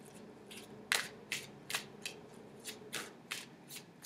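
A deck of oracle cards being shuffled by hand: a run of short, soft card snaps at an uneven pace, roughly two or three a second.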